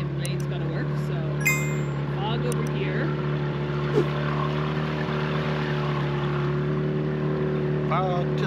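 Boat engine running steadily underway, a constant low drone. A short bright chime sounds about a second and a half in, and a sharp click at about four seconds.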